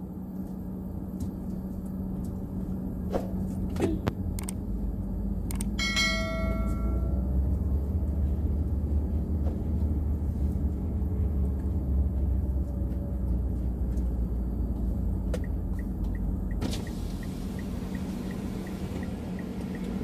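Car engine hum and road rumble heard inside the cabin of a Mitsubishi Xpander while driving, the rumble swelling through the middle. About six seconds in comes a short ringing chime of several tones, and near the end a faint, even ticking of about three a second.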